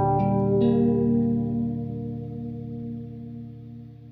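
Closing guitar chord of the song: a couple of last plucked notes in the first half-second, then the chord rings on and fades out steadily.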